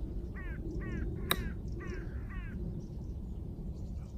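A crow cawing about five times in quick succession, with a single sharp click about a third of the way in as an iron strikes a golf ball on a short chip swing.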